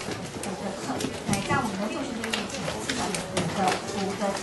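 A woman speaking, lecturing through a handheld microphone, with a few short clicks between her words.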